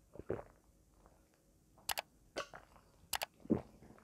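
Drinking from a glass: a soft gulp early, then a few short sharp clicks in pairs and a duller knock shortly before the end.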